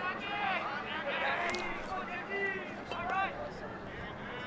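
Ballpark background through the broadcast microphone: several distant voices calling out over a low crowd murmur between pitches.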